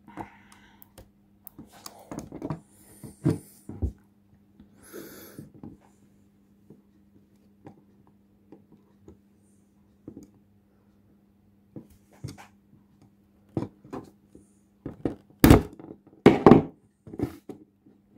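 Small plastic clicks and taps from hands and a pointed tool working the odometer mechanism of a Citroën AX Jaeger mechanical speedometer, with a few louder knocks near the end.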